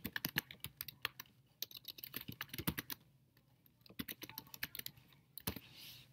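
Typing on a computer keyboard: quiet runs of quick key clicks broken by short pauses, with one sharper keystroke near the end.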